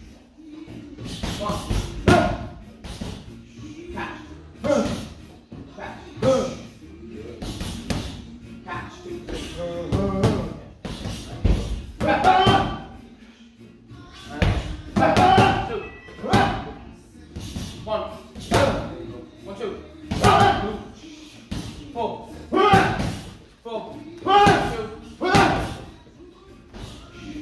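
Boxing gloves smacking focus mitts in short, repeated punch combinations, over background music.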